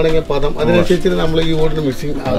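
A man talking in Malayalam, his voice drawn out in long, steady-pitched syllables.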